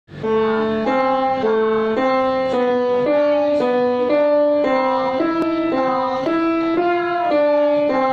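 Grand piano playing a simple beginner's primer piece: two notes sounded together at a time, changing at an even, moderate pace about twice a second, each pair held until the next.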